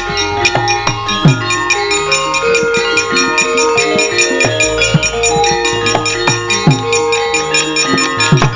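Javanese gamelan ensemble playing an instrumental passage: bronze metallophones ring out in struck notes over frequent sharp strokes, with deep drum strokes that drop in pitch every second or so.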